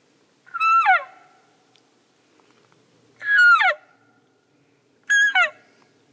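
Elk call blown through a camo-wrapped tube: three short calls about two seconds apart, each a high note that breaks sharply downward at the end, in the manner of cow elk mews.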